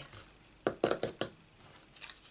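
Hard acrylic die-cutting machine plates being set down and shifted on a craft mat, about five quick clacks around the middle.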